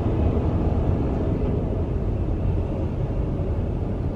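Steady low rumble of engine and road noise heard inside a car's cabin as it creeps along in slow traffic.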